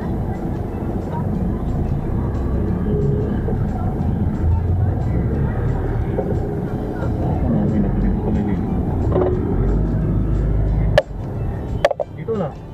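Low, steady rumble of a moving vehicle in city traffic, heard from inside, with music and voices underneath. Two sharp knocks come near the end, and the sound drops in level after the first.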